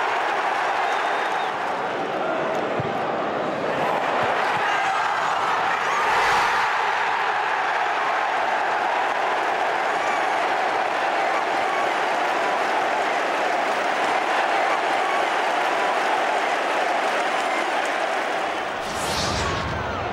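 Football stadium crowd cheering and applauding after a goal: a steady, dense wash of many voices and clapping.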